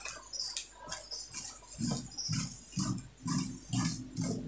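Fabric scissors cutting through printed cotton cloth on a table: a steady run of crunching snips, about two a second by the second half.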